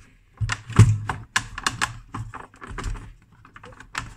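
Irregular plastic clicks and knocks from handling a plastic-cased bench multimeter as its carrying handle is moved and the meter is turned over, with the loudest knock about a second in.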